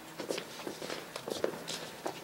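Several people's footsteps on a stage floor, a quiet, irregular scatter of steps.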